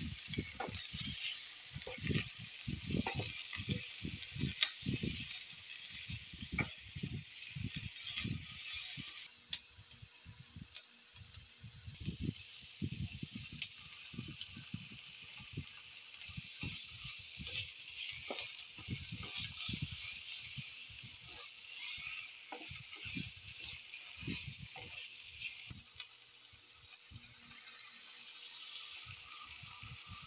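Pork pieces sizzling in oil in a nonstick frying pan, with frequent scrapes and knocks of a spatula stirring them against the pan. The sizzle drops noticeably in level about nine seconds in.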